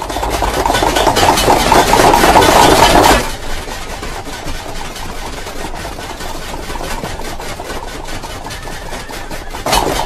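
An army of soldiers beating swords and spears against their shields: a loud, dense clatter for about three seconds, then dropping to a quieter, steady din.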